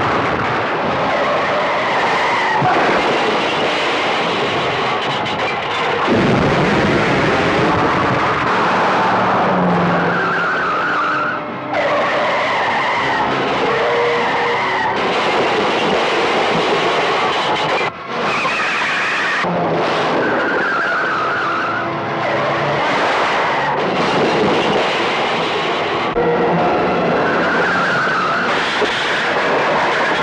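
Movie car-chase sound effects: vehicle engines running hard with tyres skidding and squealing again and again, over a background music score.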